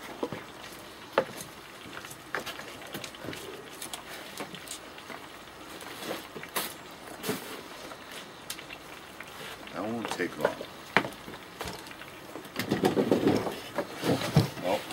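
A knife cutting onion on a board: occasional single knocks, spaced irregularly a second or more apart. Voices come in near the end.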